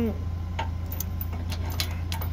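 Steel trailer safety chain and its slip hook clinking as they are handled: a few light metallic clicks of links knocking together, over a steady low hum.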